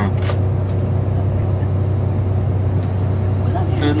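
Steady low drone of a coach bus's engine and tyre noise on a wet road, heard from inside the passenger cabin while it drives.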